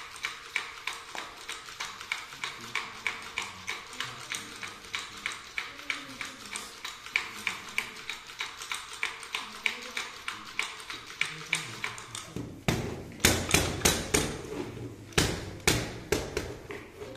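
A small wooden hand palanquin (god-chair used in temple divination), shaken between two bearers, its wooden parts clattering in a steady rattle of about four clicks a second. From about three-quarters of the way through, it strikes the wooden altar table in bursts of louder, heavier knocks.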